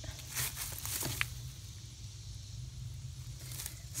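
Light rustling and crackling of straw bedding in a compost bin being moved about, in a few short bursts near the start and about a second in, over a low steady rumble.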